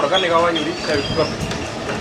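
A man speaking briefly over a steady background noise, with a short rising whistle-like tone about a second in.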